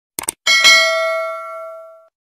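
A sound effect of two quick mouse clicks, then a bright bell ding that rings on and fades out over about a second and a half. It is the notification-bell sound of a subscribe-button animation.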